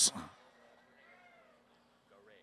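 The tail of a spoken word fades out in the first moment, then near silence with only a faint pitched trace.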